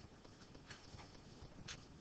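A few faint, sharp clicks of a computer mouse over near-silent room tone.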